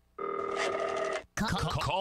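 A telephone ringing: one trilling ring about a second long, then sweeping tones that rise and fall as a jingle begins.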